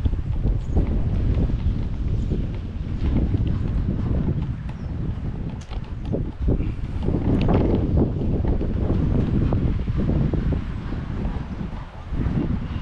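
Wind buffeting the microphone: a loud, low, gusting rumble that rises and falls.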